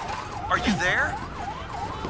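Electronic siren in a fast yelp, its pitch rising and falling about three times a second, with a brief gliding cry about half a second in.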